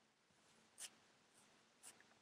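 Near silence with two faint short clicks about a second apart.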